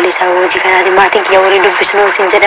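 A person talking steadily without pause: a recorded WhatsApp voice message being played back.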